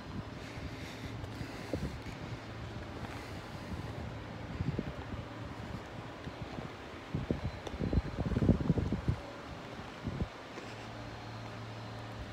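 Wind buffeting the phone's microphone outdoors over a steady low hum, with the strongest gusts a little past the middle.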